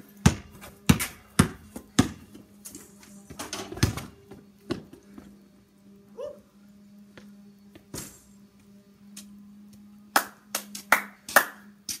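Basketball bouncing on a concrete driveway: a few dribbles about half a second apart near the start, then scattered single bounces and thuds later on. A steady low hum runs underneath.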